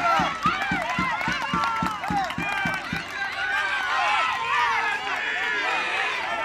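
Several young women shouting and cheering excitedly over one another in celebration, high-pitched whoops and cries. Under them runs a regular low thudding, about four beats a second, that dies away around three seconds in.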